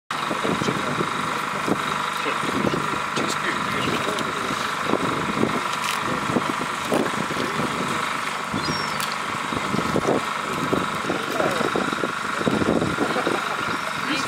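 A gill net and fish being handled by hand in a small boat: irregular rustles and knocks over a steady hum.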